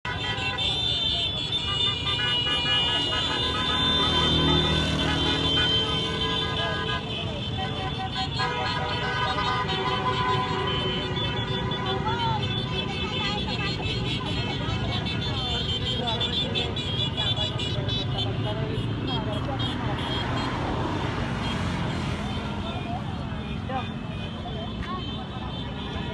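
A motorcade passing along a street: car and motorcycle horns honking in long held tones over the steady rumble of many engines. Crowd voices and shouting come through more in the second half.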